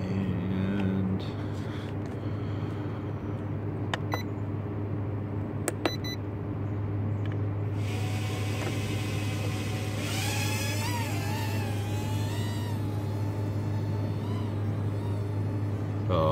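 Small quadcopter's tiny motors whining, the pitch wavering up and down from about ten seconds in as the throttle changes, over a hiss that starts a little earlier. Two short clicks with beeps come before it, about four and six seconds in, over a steady low hum.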